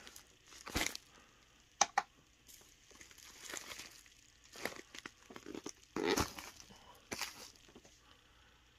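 Intermittent rustling and crinkling of a package being handled and set down on a digital postal scale, with a few sharp clicks in between.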